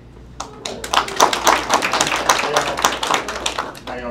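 A roomful of people applauding a nominee: many irregular hand claps begin about half a second in, swell, and die away just before the end.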